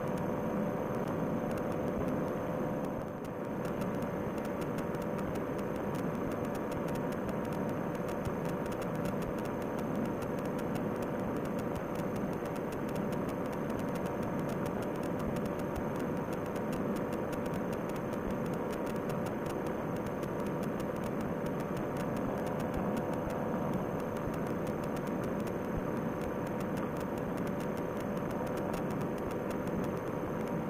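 Paramotor trike engine running steadily under power during a climb, a constant drone with a few held tones and a slight dip about three seconds in.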